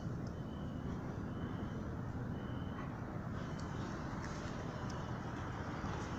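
Steady low background rumble outdoors, with a couple of faint, brief high tones.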